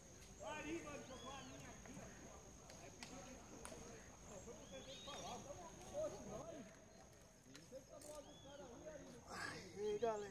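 Faint chatter of people talking at a distance, with a steady faint high-pitched tone running underneath and a few light clicks. A louder voice comes just before the end.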